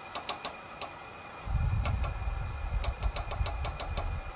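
Small tactile push-button on a Dr. Heater DR968 infrared space heater's bare control circuit board, clicking again and again as it is pressed to step the temperature setting up. Some presses are single and some come in quick runs. A low rumble joins about one and a half seconds in.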